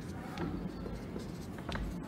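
Dry-erase marker writing on a whiteboard: soft stroking scratches, with a couple of sharper ticks near the end.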